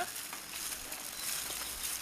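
Faint steady background hiss with a few light clicks, no clear source standing out.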